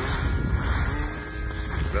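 Steady low rumble of wind on the microphone and snow scraping underfoot while sliding down a groomed ski slope, with a faint hummed note near the middle.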